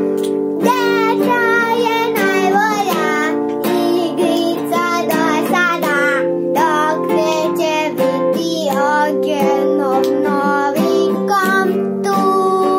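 A young girl singing a song, accompanied by a strummed acoustic guitar; guitar and voice start together at the very beginning.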